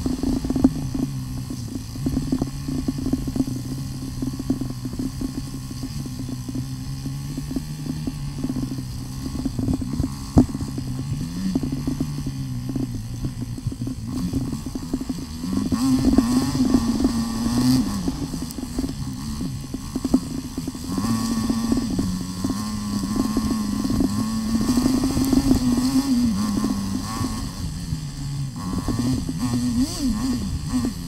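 KTM Freeride 350's single-cylinder four-stroke engine running under way on a dirt trail, its pitch low and steady at first, then rising and falling with the throttle in the second half, with frequent short knocks from the bike going over rough ground. The footage is played at four times speed.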